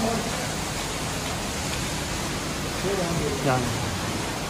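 Steady rushing noise with no pitch, even throughout, with one short spoken word near the end.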